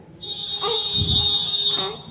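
A loud, steady, shrill whistle-like tone holding one pitch over a hiss. It starts just after the beginning and cuts off near the end.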